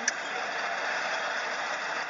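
Steady engine and road noise heard from inside a trotro minibus, with a single click just after the start.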